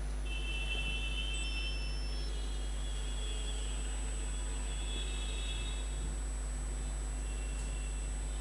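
Steady low electrical hum, with faint high-pitched tones coming and going.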